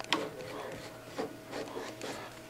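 A MIG torch's connector collar being screwed down by hand onto the welder's front socket: soft rubbing and scuffing from the collar and torch lead, with a couple of light clicks near the start.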